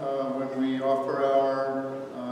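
A man's voice chanting in held notes that move slowly from pitch to pitch.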